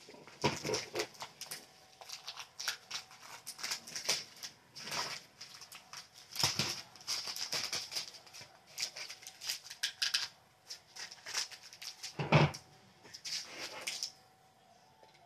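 Small plastic bags of diamond-painting beads crinkling and rustling as they are handled, with scissors snipping a bag open. There is a louder knock near the end.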